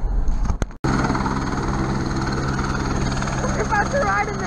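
Low vehicle rumble that cuts off abruptly about a second in. It is followed by the steady, even hum of helicopter engines running, with constant tones in it. Voices come in near the end.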